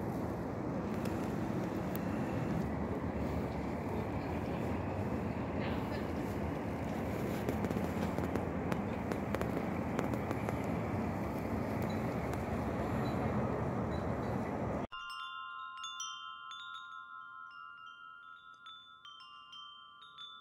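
Steady outdoor rumble and hiss for about fifteen seconds, cut off suddenly and followed by a wind chime ringing in a few clear tones with light tinkles, fading out.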